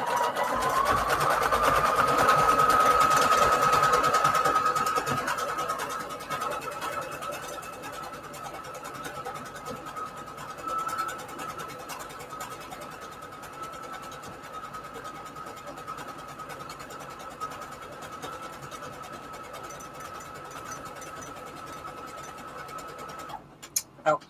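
Brother sewing machine running a decorative scalloped stitch through fabric and an index card, its motor whine rising as it starts. It is louder for the first few seconds, then runs steadily and a little quieter, and stops about a second before the end with a couple of clicks.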